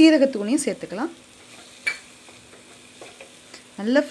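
Onion-tomato masala frying with a faint sizzle in a metal kadai, stirred with a wooden spatula. There is a single sharp knock about two seconds in.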